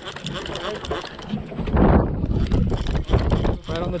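Wind gusting on the microphone as a low rumble, much louder from about halfway through, with faint voices in the background.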